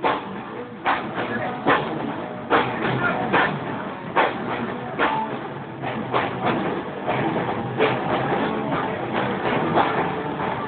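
Live rock band playing electric guitars and a drum kit, with a steady beat of drum hits.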